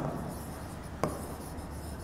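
Chalk writing on a blackboard: a low scratching of the chalk strokes, with a sharp tap of chalk on the board about a second in.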